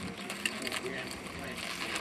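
Light clicks and handling rustle as the ornithopter's battery leads and connectors are handled, with faint voices underneath.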